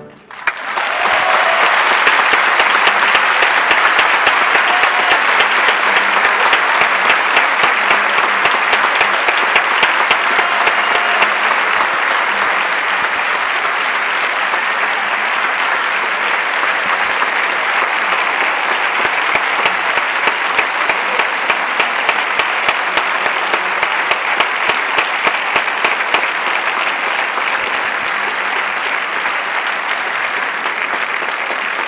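Theatre audience applauding loudly and steadily, breaking out about half a second in as the orchestra's last chord dies away at the end of the opera's final soprano scene, then easing slightly toward the end.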